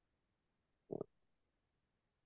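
Near silence, broken about a second in by one short, low hum of a person's voice, like a brief 'mm'.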